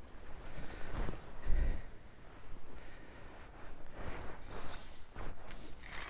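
Rustling and soft irregular thumps of handling and movement close to the microphone, with one heavier low thump about one and a half seconds in.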